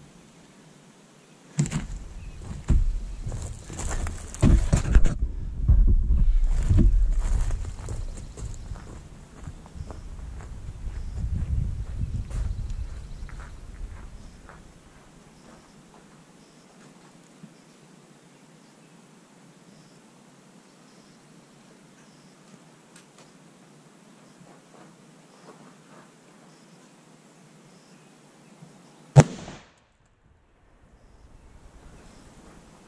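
Knocking and low rumbling close to the microphone for about the first half, as the gel blocks are handled, then a quiet stretch. Near the end comes one sharp rifle shot, the loudest sound: a .308 Winchester firing a reduced load into ballistic gel.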